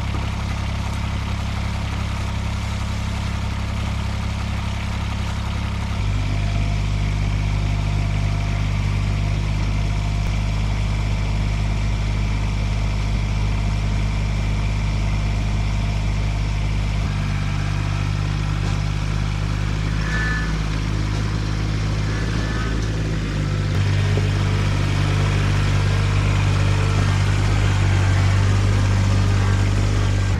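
Compact tractor engine running steadily, its engine speed changing in steps a few times, growing somewhat louder near the end as the tractor is driven off the trailer.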